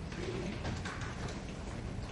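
Library reading-room ambience: a steady low hum under a few small clicks and rustles of people studying, with a short low hoot-like tone a quarter second in.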